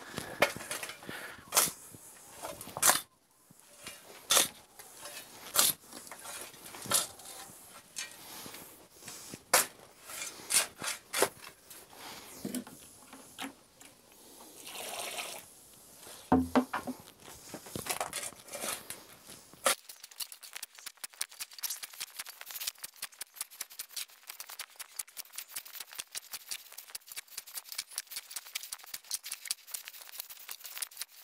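A steel spade scraping and digging into damp soil and compost on a dirt floor as the pile is turned, in irregular sharp scrapes and knocks. Around the middle there is a brief splash of liquid nutrient poured from a bucket onto the pile, and from about twenty seconds in the spade work becomes a quick, steady run of light crunching clicks.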